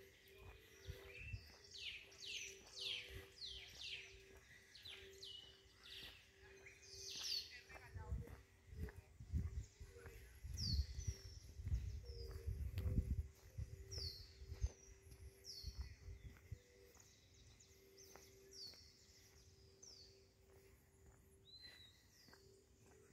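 Small birds calling in park trees. A quick run of downward-sweeping chirps fills the first several seconds, then single falling calls come about once a second over a faint steady hum. Low rumbles from about a third of the way in to past the middle are the loudest sound.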